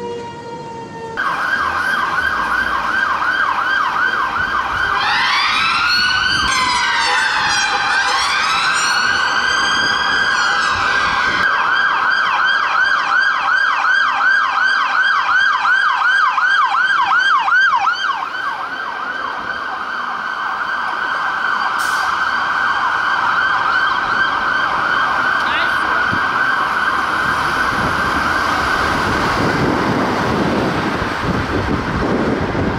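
London Fire Brigade fire engine siren in a fast yelp, about three to four sweeps a second, starting suddenly about a second in. From about five to eleven seconds a second siren wails alongside it in slower rising and falling sweeps.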